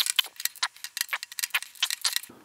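Rapid clicking, about ten clicks a second, from a 15 inch-pound torque limiter on a hand driver slipping at its set torque as a scope ring screw is turned: the screw is already at torque.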